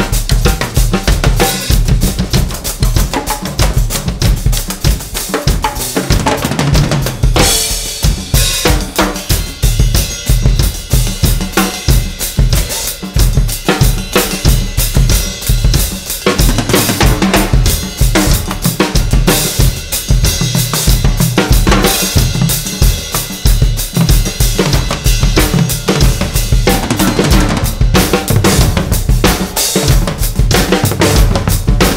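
Two drummers playing drum kits together in a busy, steady groove of bass drum, snare and cymbals, with percussion in the mix; the low end thins briefly about a third of the way in.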